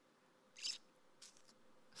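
Near silence, broken by a short breathy hiss about half a second in and a few faint mouth clicks a little later: a man's breath and small mouth noises close to the microphone.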